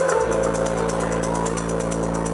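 Electronic dance music played loud over a club sound system: a held synth bass note and sustained chords under a steady, even hi-hat pattern.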